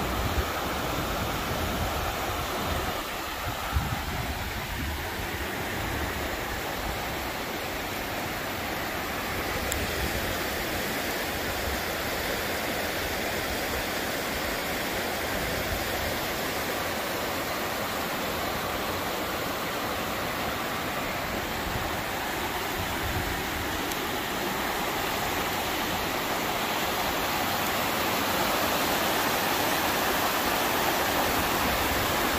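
Shallow river water rushing steadily over rock-lined rapids, growing a little louder near the end.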